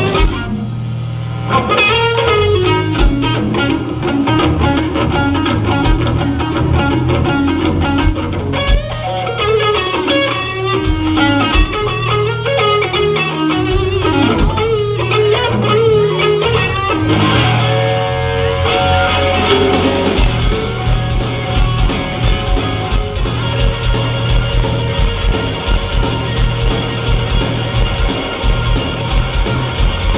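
Live blues-rock trio playing: electric guitar carries a lead line of bent, wavering notes over bass guitar and drums. From about twenty seconds in, a steady drum beat comes to the fore.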